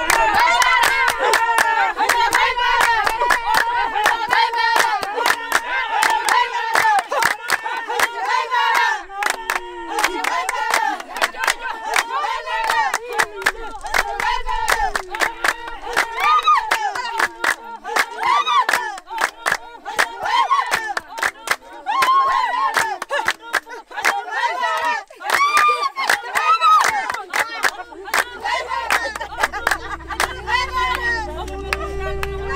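A group of Himba women singing together and clapping their hands in a steady rhythm, a traditional Himba dance song, loud and continuous.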